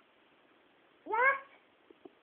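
One short vocal call about a second in, rising steeply in pitch over half a second and then fading.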